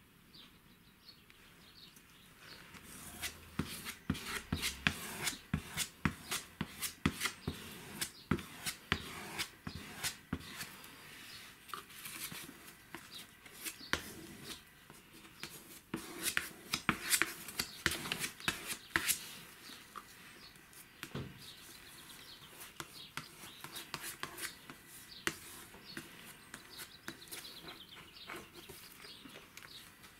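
Glue being spread with a spreader on wooden boards and over paper, with paper pages handled and pressed down: rapid, irregular taps, dabs and scrapes, busiest through the first two-thirds and lighter near the end.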